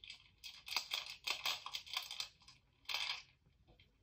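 Pencil shading on paper: quick, scratchy back-and-forth strokes, several a second, stopping about three seconds in.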